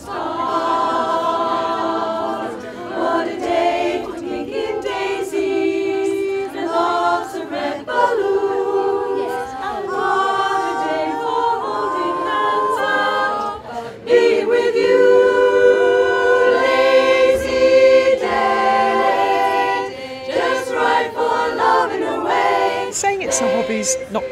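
A cappella barbershop singing: unaccompanied voices in close harmony, holding and moving through sustained chords, louder for a stretch in the middle.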